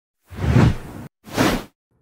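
Two whoosh sound effects in a news channel's animated logo intro: a longer one with a deep low end, then a shorter, lighter one just after.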